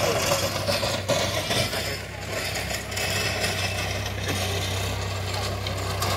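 Tractor engine running steadily under load while working a rotary tiller through dry soil, with a brief dip in level about two seconds in.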